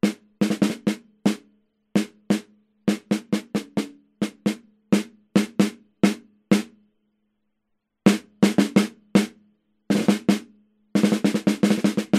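Snare drum hit in single strokes and short groups, recorded dry through an Akai ADM 40 dynamic microphone close to the top head at a steep angle. Each hit is short and tight, with a brief low ring, because the snare carries a dampening ring; after a pause of over a second mid-way, the strokes come quicker near the end.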